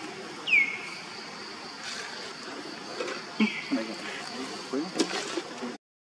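Short high-pitched animal calls that slide down in pitch, the loudest about half a second in and another near the middle, over a steady high insect drone. A sharp click comes about five seconds in, and the sound cuts out briefly near the end.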